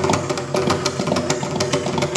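Mridangam played in rapid, dense strokes over a steady low drone, as part of a Carnatic percussion solo (thani avarthanam).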